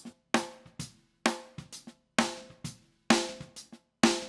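Recorded snare drum track played back, four strong snare hits about a second apart with softer hits between. The hits are a blend of the original recorded snare and a replacement sample set in SPL DrumXchanger.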